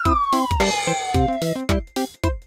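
Cartoon sound effect: one long falling whistle that glides down over about a second and a half, with a whoosh partway through. It plays over upbeat background music with a steady beat.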